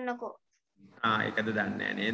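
Voices over video-call audio. A child's voice trails off just after the start; after a short gap, a man's voice comes in about a second in and sounds rough and distorted.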